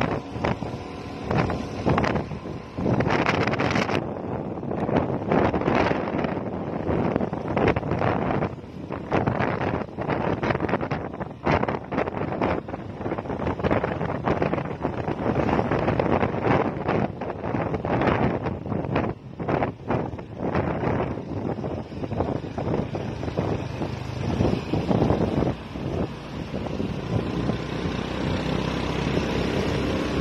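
Wind buffeting the microphone of a motorcycle riding at speed, loud and gusty, with the bike's engine running underneath.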